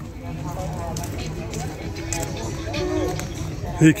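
Several people talking in the background, their voices overlapping, over a steady low rumble.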